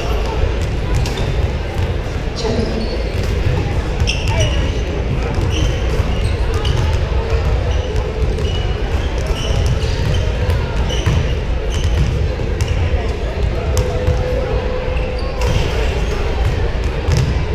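Several basketballs bouncing and dribbling on a hardwood gym floor during warm-ups, irregular knocks echoing in the large hall, with short high sneaker squeaks and steady crowd chatter.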